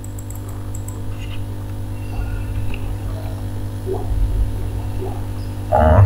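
Steady low electrical hum with a stack of overtones, like mains hum picked up by the recording microphone, with a few faint small noises.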